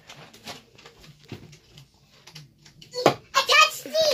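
A quiet stretch with faint light taps and a low hum, then about three seconds in a sharp knock followed by a child's loud, excited high-pitched voice.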